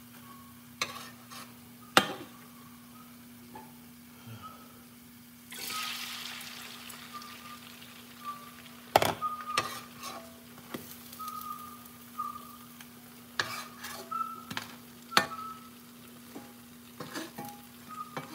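Pancakes frying in a skillet: a burst of sizzling about five seconds in that slowly fades, with sharp clinks of a metal spatula and fork against the pan. A steady low hum runs underneath.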